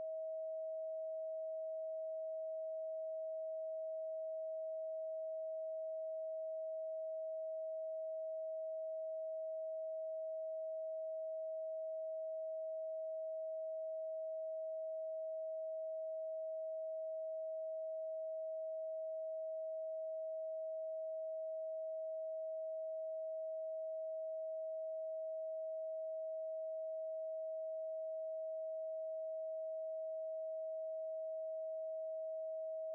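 A steady 639 Hz pure sine tone, one unchanging pitch with no overtones, held throughout.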